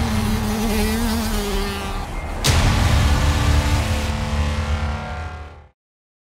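Channel intro sound design: music mixed with engine revving, with a loud hit about two and a half seconds in. It fades out shortly before the end into silence.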